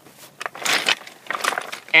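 Close rustling and clicking: a loud burst of rustle about half a second in, then a run of short clicks and crackles.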